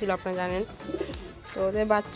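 Domestic pigeons cooing, with low coos heard in a quieter stretch around the middle, between a voice or music at the start and end.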